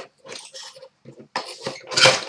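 Packaging being handled and unwrapped by hand: a run of short, irregular crinkles and rustles.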